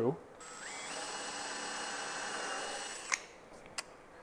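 Cordless drill boring a pilot hole for a screw into solid wood. The motor spins up with a rising whine about half a second in, runs steadily for about two seconds, then winds down, followed by a sharp click.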